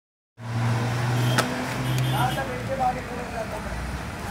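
A steady low hum that stops about two and a half seconds in, with one sharp click about a second and a half in and faint wavering voices in the background.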